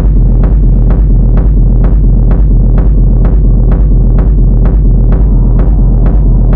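Techno track with a steady four-on-the-floor kick drum, about two beats a second, over a deep droning bass.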